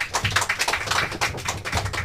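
Applause: a few people clapping, a quick, uneven patter of hand claps.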